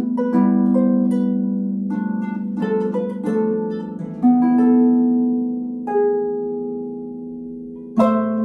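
Concert harp playing a slow minuet melody: plucked notes and small chords that ring on over each other. About six seconds in, a last note is plucked and left to ring and fade.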